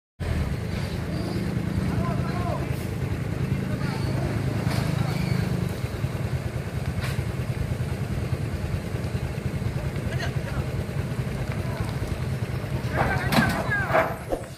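Heavy truck engine running with a steady low rumble, a little louder for the first six seconds, as people call out in the background; the loudest calls come near the end.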